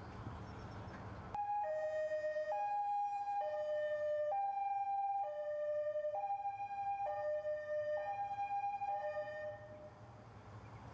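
Police vehicle's European two-tone siren, alternating a high and a low note, each held just under a second. It cuts in suddenly just over a second in and fades near the end.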